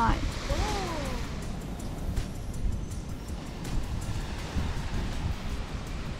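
Wind gusting across the microphone, a steady outdoor rush with uneven low rumbling, and the wash of small waves on the beach.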